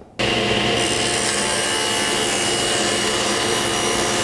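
Table saw with an Infinity Super General 10-inch, 40-tooth carbide general-purpose blade cutting through a wooden board: a steady sawing sound over the motor's hum that starts suddenly just after the beginning and holds an even level.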